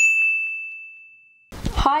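A single bright electronic "ding" from a notification-bell sound effect: one clear high tone struck once, ringing on and fading away over about a second and a half. A woman's voice starts near the end.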